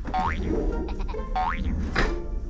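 Light background music with two rising cartoon boing sound effects, one near the start and another about a second later.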